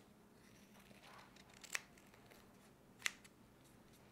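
Scissors snipping twice, about a second and a quarter apart, cutting off the overlong end of a strip of K-tape (elastic kinesiology tape).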